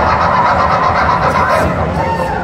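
Live rock band playing loud through a concert PA, heard from the audience as a thick, steady wash of sound.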